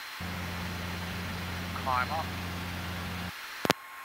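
Light aircraft piston engine at climb power, heard as a steady low drone that starts abruptly and cuts off about three seconds in. A single sharp click follows near the end.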